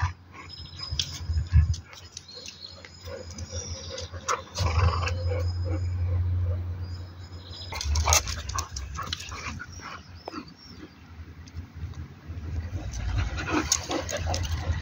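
Two dogs, a boxer-pointer cross and a Portuguese Podengo, growling in play during a tug-of-war over a rope toy, in several low spells of a second or more, with scattered scuffs and clicks between.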